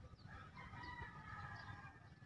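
A rooster crowing faintly: one long call that starts about half a second in.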